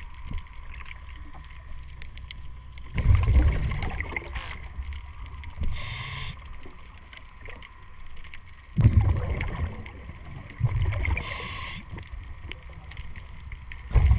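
A scuba diver breathing through a regulator underwater. Short, high hissing inhales come about 6 and 11 seconds in, between three louder low rushes of bubbling exhaled air.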